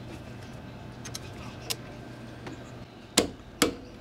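Click-type torque wrench on a scooter's front axle nut: a few faint ticks, then two sharp clicks close together near the end as the wrench breaks over at its set torque of 59 Nm.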